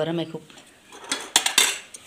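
Stainless steel bowls and plates clattering against each other as they are handled, a quick cluster of metallic clinks about a second in.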